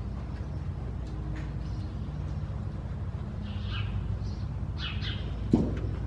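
Small birds chirping a few times in the second half, over a steady low rumble. A single sharp knock stands out near the end.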